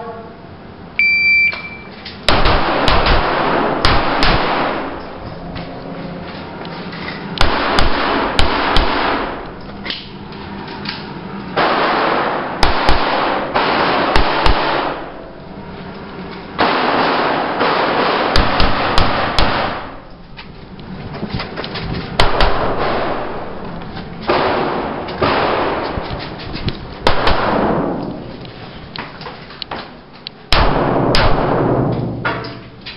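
A shot timer's start beep, one short high tone about a second in, then an IPSC course of fire: strings of rapid gunshots, each ringing on in echo, broken by short pauses as the shooter moves between positions.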